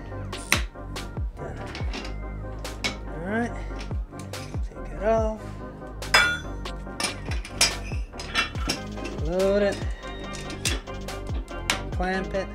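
Metal weight plates clinking against each other and the dumbbell handles as they are loaded on and clamped, in a run of sharp clinks throughout, over background music.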